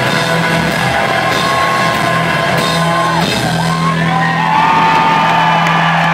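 Live rock band playing the final bars of a song: a long held chord from drums, electric guitar and keyboard, with a steady low note from about halfway through. Crowd whoops and yells ring out over it.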